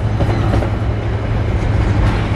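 Container flatcars of a freight train rolling past close by: a steady rumble of steel wheels on the rails.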